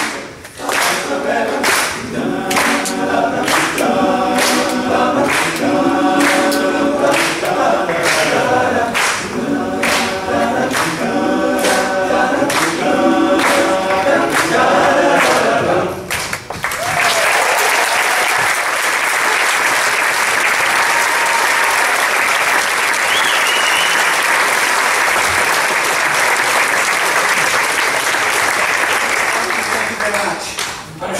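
Men's barbershop chorus singing a cappella in four-part harmony, with a steady rhythmic pulse. The song ends about sixteen seconds in, and audience applause follows.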